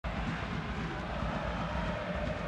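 Steady background noise of a football stadium crowd, picked up by the live match broadcast.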